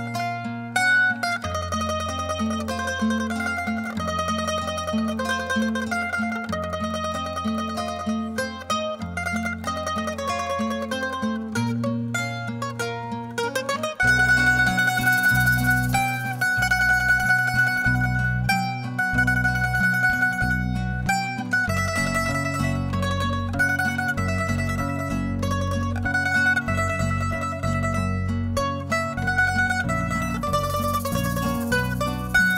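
Instrumental music with a plucked-string melody over a stepping bass line, getting louder and fuller about fourteen seconds in.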